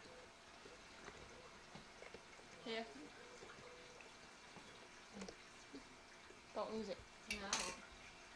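Quiet room tone, with a short voice sound about three seconds in and a few brief spoken words near the end.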